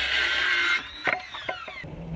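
Makita cordless circular saw cutting through a pine trim board. The trigger is released a little under a second in, and the blade winds down with a falling whine, with a couple of light knocks.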